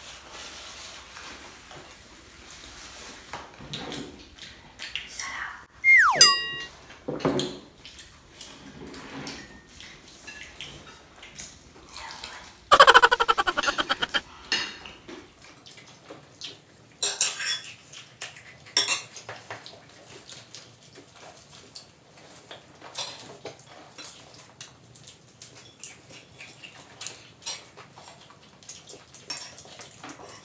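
Table noises of people eating fried chicken: scattered clicks and clinks of plastic cutlery and dishes, rustling paper and napkins, and eating sounds. A brief falling squeak comes about six seconds in, and a short, fast rattle about thirteen seconds in is the loudest moment.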